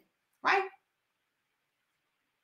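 Speech only: a woman says a single short word, "right", about half a second in, with dead silence around it.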